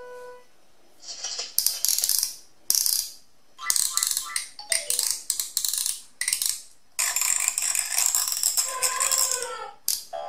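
Plastic ratcheting clicks from the turning ears of a VTech Shake & Sing Elephant Rattle baby toy. They come in a series of short bursts and then a longer run of about three seconds. The toy's melody ends on a last note at the start, and a short falling tone sounds near the end.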